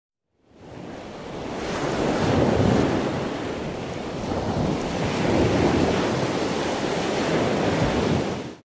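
Ocean surf: a steady rush of waves that fades in from silence about half a second in and swells and ebbs, loudest around two and a half seconds and again around five and a half.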